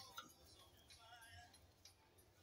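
Near silence: room tone, with a faint click near the start.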